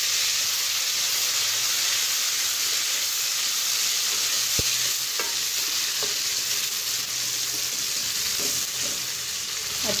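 Fried onions and ginger-garlic paste sizzling steadily in hot oil in a metal pot while being stirred with a spatula. One sharp click about halfway through.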